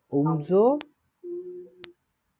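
A person's voice making wordless sounds: a short vocal sound that rises in pitch, then a steady hum of about half a second. Two light clicks come at about a second in and near the end.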